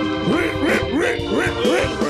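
Live church band music: steady held keyboard chords under a lead sound that swoops quickly upward in pitch about five times in an even rhythm.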